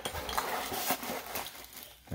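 Plastic bags of small plastic model parts rustling and clicking together as a hand pulls them out of the box, dying down near the end.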